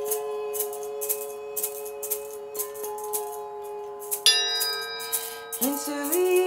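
Hanging chime bars ringing on in long, steady tones while a hand shaker keeps a steady beat of about two shakes a second. A fresh chime strike about four seconds in adds a set of higher ringing tones.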